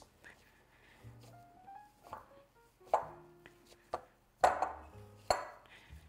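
Soft background music, with a few short squishing and pressing noises of a soft, sticky pastry dough being worked into a ball by hand in a glass bowl.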